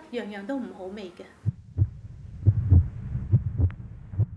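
Low, muffled heartbeat thuds, some in close pairs, beginning about one and a half seconds in after a woman's voice stops. It is a heartbeat sound effect laid under the edit.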